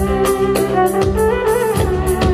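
Live band playing an instrumental passage: a synthesizer keyboard melody over a steady beat of hand drums.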